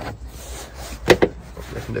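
A plastic air intake duct being pushed and scraped into place among the engine-bay plastics, rubbing with a few sharp plastic knocks, the loudest about a second in.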